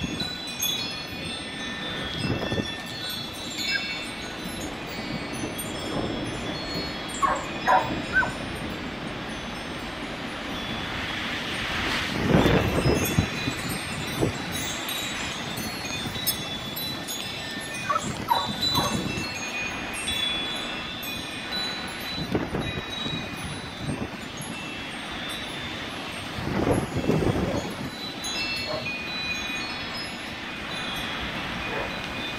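Porch wind chimes ringing on and on, a jumble of high, overlapping tones, as gusty wind comes and goes. Several louder rushes of wind swell and fade, the strongest about twelve seconds in.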